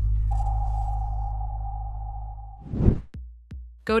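Logo-reveal sound effect: a deep bass rumble slowly fading under a held steady tone, ending in a short, loud swoosh about three seconds in. Soft, evenly spaced low beats of background music follow.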